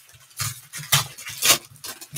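Foil trading-card pack wrappers crinkling and tearing as hands rip the packs open, with sharp crackles roughly every half second.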